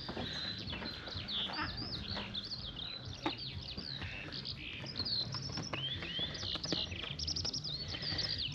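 Birds singing outdoors: a continuous stream of quick, high chirps sliding up and down, over a low steady background rumble.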